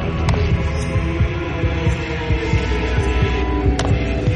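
A low, throbbing drone of suspenseful dramatic underscore music, with held tones above it. Two sharp clicks sound, one just after the start and one near the end.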